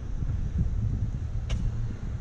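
Wind buffeting the action camera's microphone, a low, uneven rumble, with a single sharp click about one and a half seconds in.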